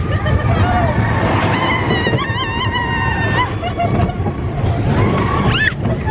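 Riders laughing and shrieking over the steady rumble of a moving amusement ride, with a sharp rising shriek about five and a half seconds in.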